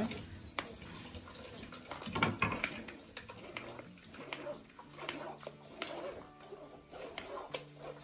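Metal spoon stirring and scraping acerola pulp in a plastic mesh sieve as the juice strains into a metal pot, giving scattered light clicks and scrapes. A low steady hum comes in about halfway through.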